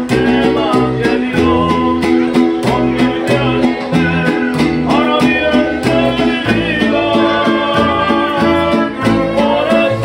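Live mariachi band playing: strummed guitars over deep plucked bass notes in a steady rhythm, with a melody line above.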